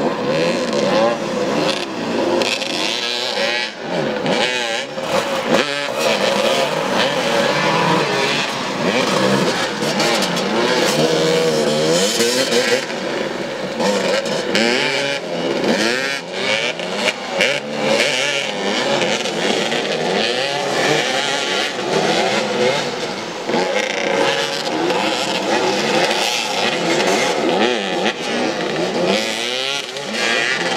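Several motoball motorcycles' engines running together, revving and dropping in constant, overlapping swings of pitch as the riders accelerate, brake and turn across a dirt pitch.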